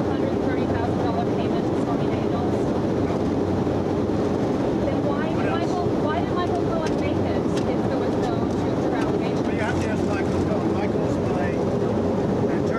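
Steady jet engine and airflow noise inside the cabin of Air Force One in flight, with reporters' voices faintly calling questions over it.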